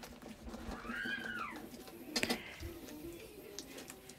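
Faint handling of a soft vinyl bath squirter toy being cut open with a knife. About a second in there is one squeak that rises and falls in pitch, and a couple of sharp clicks follow a little after two seconds.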